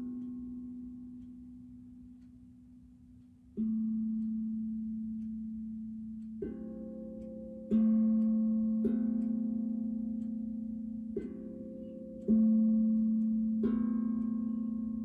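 Steel tongue drum struck slowly with two mallets, about eight single notes a second or more apart, each ringing out and fading as the next is played.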